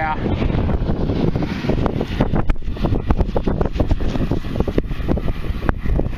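Wind buffeting the microphone, with many short crackles, scrapes and knocks as a gloved hand digs and pulls a chunk of rusty iron out of wet mud.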